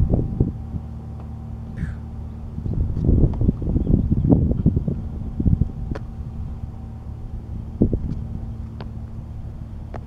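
Irregular thuds of feet and hands hitting a mat on concrete during burpees with push-ups, loudest around the middle and with a couple of sharper knocks later, over wind rumble on the microphone and a steady low hum.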